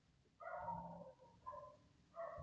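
Two faint, short pitched cries: one about half a second in, and a shorter one about a second later.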